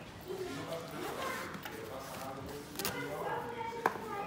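A fabric helmet bag's zipper being pulled open and the bag handled, with quiet voices talking in the background. There is a sharp click just before the end.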